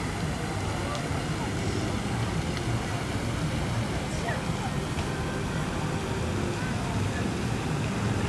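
Steady low outdoor rumble with faint, indistinct voices of people and a few short faint chirps.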